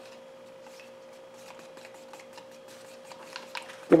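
Wooden paint stick stirring base coat and reducer in a plastic mixing cup, making light irregular ticks and scrapes against the cup, a few louder near the end. A steady faint hum runs underneath.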